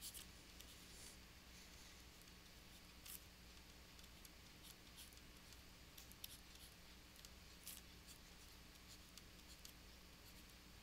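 Near silence: room tone with a faint low hum and scattered faint ticks of a stylus drawing on a tablet.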